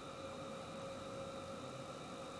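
Steady low hiss with a faint constant hum under it, unchanging and without distinct events.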